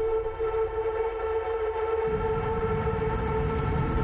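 Tense background score: a held, droning chord, joined by a low rumbling layer about halfway through.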